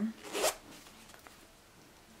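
A heavy zipper on a small sewn fabric pouch being pulled open in one quick stroke, about half a second in.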